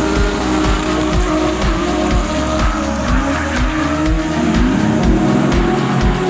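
Music with a steady deep beat of about two a second, mixed with drift cars running at high revs and their tyres squealing as they slide in tandem.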